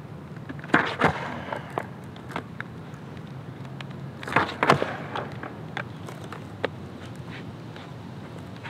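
Skateboard ollies on asphalt: sharp wooden knocks of the board's tail popping and the board landing. There is one cluster of hits about a second in and a loud pair about halfway through, with lighter single knocks and rolling between them.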